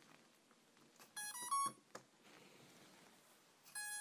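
Electronic power-up tones from an RC plane's brushless motor and speed controller as the battery is connected. A faint click comes first, then a quick run of beeps stepping in pitch about a second in, and a single steady beep near the end.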